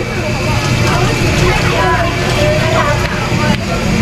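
Busy market ambience: distant voices over a steady, dense noise.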